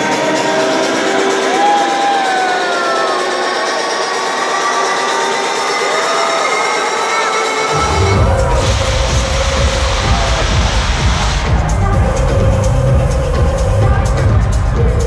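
Electronic dance music played loud over a club sound system: a breakdown with melody and no bass, then the heavy bass beat drops in about eight seconds in.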